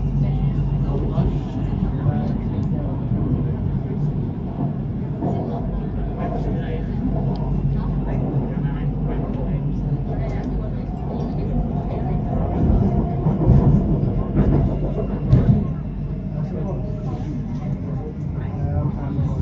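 Bangkok BTS Skytrain car running along the elevated track, heard from inside the car: a steady rumble and hum, with a few louder knocks about three-quarters of the way through.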